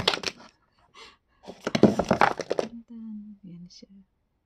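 Rustling and knocking as an iPhone 13 Pro box is opened and the phone taken out, in two loud bursts, the first right at the start and the second about a second long in the middle. A drawn-out sung 'ta-dan' follows near the end.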